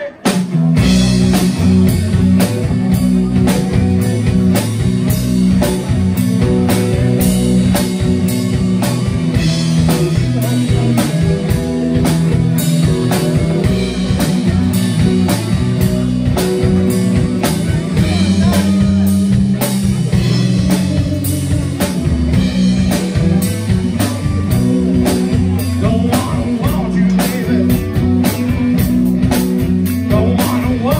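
A live blues-rock band playing together: drum kit, electric bass, two electric guitars and keyboard, all coming in at once right at the start.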